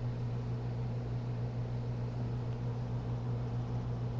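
Steady low hum over an even hiss, with no separate events: the room's background noise.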